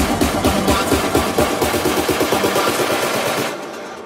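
Big room electronic dance music at a build-up: a rapid drum roll of about eight hits a second over synths. The roll fades, and the bass drops out about three and a half seconds in, just before the drop.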